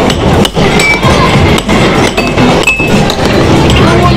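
Air hockey puck clacking sharply against mallets and rails, about once a second, over busy arcade noise with short electronic beeps.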